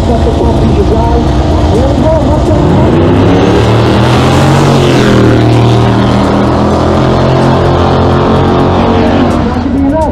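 Two drag cars launching side by side and accelerating hard down the strip, one of them a 1989 Mustang with a Procharger-supercharged small-block Ford V8. The engine note rises as they pull away, sweeps down about halfway through as they pass, then runs on steadily before fading near the end.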